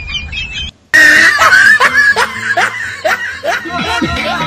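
Laughter that cuts off abruptly just under a second in, followed by another loud stretch of laughing.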